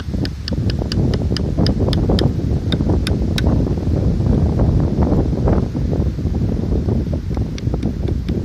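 Wind buffeting the microphone, with rustling, as a steady low rumble. A rapid series of sharp, high ticks, about four a second, sounds over the first few seconds and comes back near the end.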